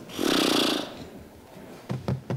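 A short, loud rush of air lasting under a second, followed near the end by a few sharp knocks.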